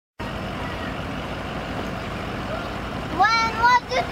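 Steady rumble of a vehicle engine idling, then a girl's high-pitched shouting about three seconds in.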